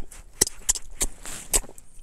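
Wet lip smacks and mouth clicks from licking chip seasoning off the fingers: about five short, sharp smacks spread over two seconds, with a brief soft hiss of breath a little past the middle.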